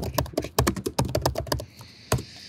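Computer keyboard typing: a quick run of keystrokes, several a second, as a short name is typed in.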